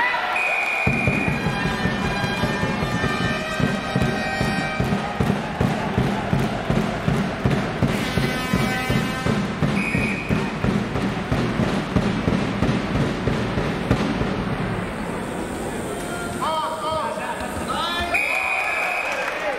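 Referee's whistle blowing short blasts at the start, about ten seconds in, and at the end. Under it a crowd drum beats a fast, steady rhythm that stops about fourteen seconds in. Held horn-like tones sound over the first few seconds.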